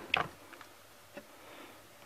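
Lid of a Power Pressure Cooker being handled and set closed: one sharp knock near the start, then a couple of faint ticks.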